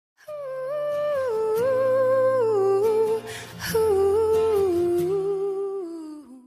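Intro music: a wordless, hummed-sounding melody in two phrases, each stepping downward in pitch, over sustained low notes.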